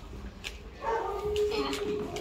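Small dog whining: one long, steady whine starting about a second in.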